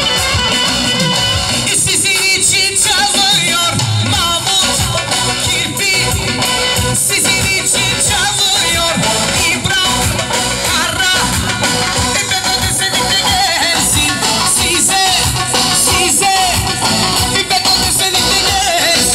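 Live band playing an amplified dance tune through large PA speakers, loud and unbroken, with a lead melody wavering up high over a steady rhythm.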